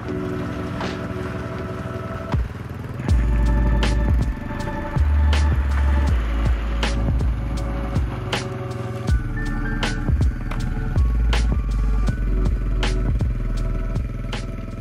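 Background music with held chords and a steady beat; a deep bass line comes in about three seconds in.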